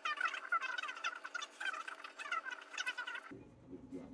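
A rapid series of short chirping animal calls, lasting about three seconds and cutting off suddenly.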